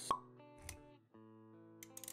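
Intro-animation sound effects over music: a sharp pop right at the start, a softer thump about halfway through, then held musical notes after a brief drop-out.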